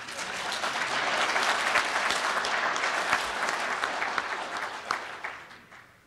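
An audience applauding: a dense patter of clapping that swells quickly, holds for a few seconds and dies away near the end.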